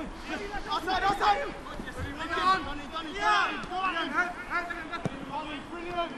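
Footballers' voices calling out across the pitch during play, with a ball struck once about five seconds in.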